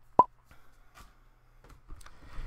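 A single short pop that sweeps quickly up in pitch, followed by a few faint clicks.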